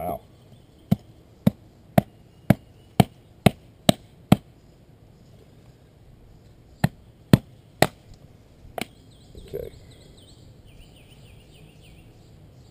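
Pine wood being chopped into chunks: a quick run of eight sharp strikes about half a second apart, then after a pause three more and a single last strike.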